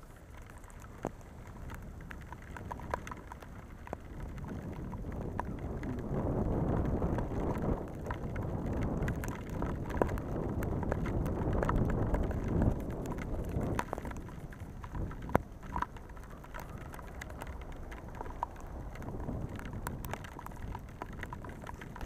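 Bicycle ridden through heavy rain on a wet street: a steady hiss of rain and tyre spray with low rumble, growing louder through the middle stretch, scattered with sharp ticks of raindrops and small knocks from the bike.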